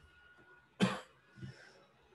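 A man coughs sharply about a second in, followed by a softer short throat sound half a second later.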